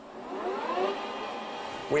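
A machine motor spinning up: a whine of several tones that climbs in pitch and loudness over the first second, then holds fairly steady.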